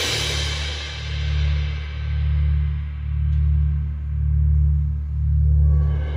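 Marching percussion ensemble playing: a sustained low electronic bass note from the front ensemble's keyboard and speaker swells and fades about once a second. Over it, the ringing of cymbals and gong dies away in the first seconds, and metallic cymbal sound builds again near the end.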